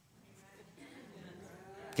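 Faint, drawn-out voice murmur, rising about half a second in after a near-silent pause, with a man's spoken word starting right at the end.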